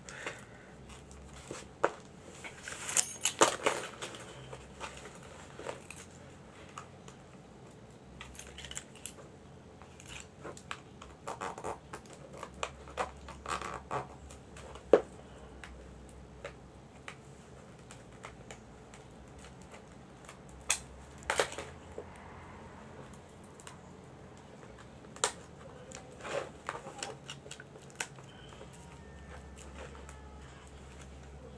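Scattered clicks, crinkles and rustles of a CD's plastic packaging being handled and picked at to get the wrapping off, with a few sharper clicks among them. A faint low hum comes and goes underneath.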